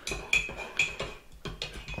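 Metal spoon clinking and scraping against the inside of a ceramic mug while stirring thick melted gummy-bear liquid, a few clinks with a brief ring in the first second, then quieter scraping.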